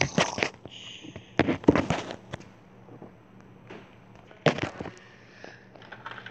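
Plastic Lego bricks clicking and clattering as they are handled, in three short bursts: at the start, around two seconds in and around four and a half seconds in.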